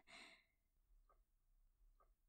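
Near silence, with a short faint exhale from a woman right at the start.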